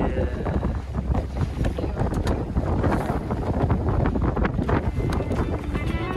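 Strong wind buffeting the microphone and water rushing past a small open motorboat under way across choppy water, in irregular gusty surges.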